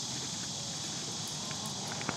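Outdoor quiet with a steady high-pitched insect chorus, crickets, and a few faint soft ticks of horse hooves on arena dirt in the second half.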